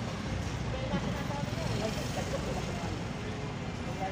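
Steady low rumble of engines and street traffic, with faint voices in the background.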